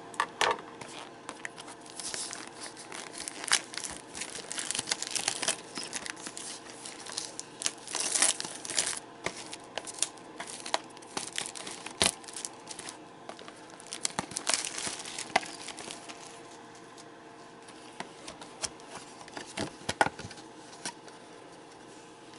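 Clear plastic shrink wrap being torn and peeled off a cardboard trading-card booster box, crinkling and crackling irregularly. It grows quieter in the last several seconds, with a few sharp clicks.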